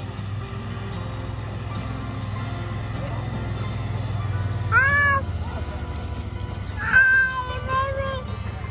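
Background music, with two short, high, rising-and-falling animal calls about five and seven seconds in, the second longer than the first.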